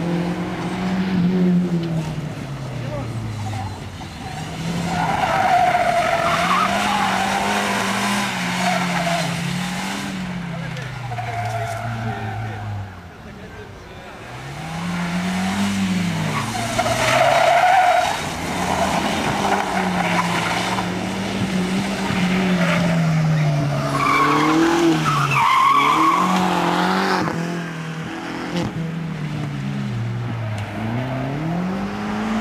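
Skoda Octavia estate driven hard around a tight course, its engine revving up and falling back over and over as it accelerates and brakes between corners. Its tyres squeal several times in the corners.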